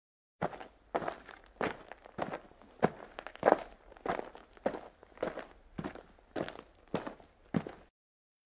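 Footsteps at a steady walking pace, a little under two steps a second, starting shortly after the beginning and stopping just before the end.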